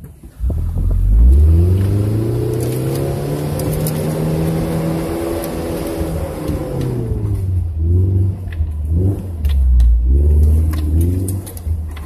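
Truck engine heard from inside the cab, crawling up a rocky off-road trail: it revs up about half a second in, holds a steady higher pitch for several seconds, drops back, then rises and falls a few times under load. Light clicks and rattles run through it.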